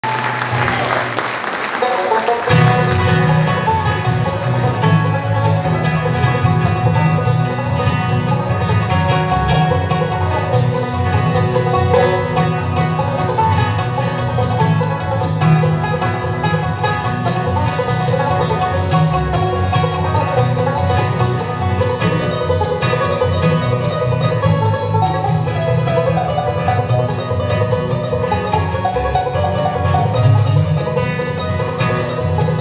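Live bluegrass band playing an instrumental on banjo, fiddle, mandolin, guitar and bass. A lone instrument opens without bass for about two seconds, then the full band comes in.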